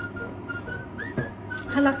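A thin, high whistle-like tone in short repeated notes at one pitch, with one note curling upward about a second in. A single click follows shortly after.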